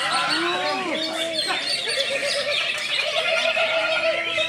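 Green leafbird (cucak ijo) in full song, with varied whistles and trills, among many other caged songbirds singing at the same time, with people's voices and calls behind.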